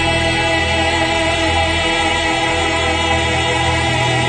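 Choir with instrumental accompaniment holding one long chord, the voices wavering slightly with vibrato.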